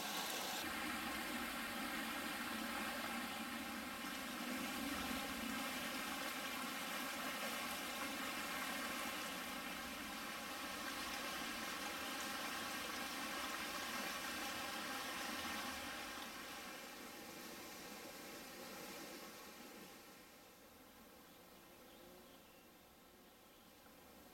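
Steady rush of running water from a mountain spring, fading out over the last several seconds.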